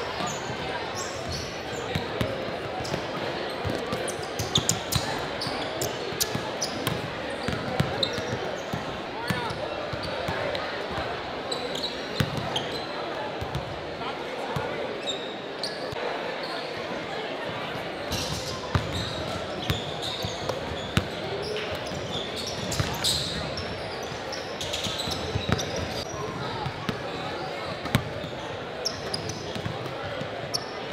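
Basketballs bouncing on a hardwood gym floor during warm-ups, irregular thuds scattered throughout, over a steady murmur of voices in a large gym.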